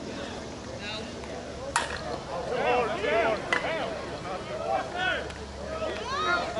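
A slowpitch softball bat hitting the ball with a single sharp crack about two seconds in, then players shouting. A second sharp knock comes about a second and a half after the hit.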